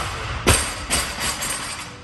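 Loaded barbell with rubber bumper plates bouncing on the lifting platform after being dropped. There is a loud bounce about half a second in, then a few smaller knocks as it settles and rolls. Gym music plays underneath.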